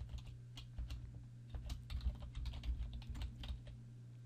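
Typing on a computer keyboard: an irregular run of quick key clicks that stops shortly before the end, over a low steady hum.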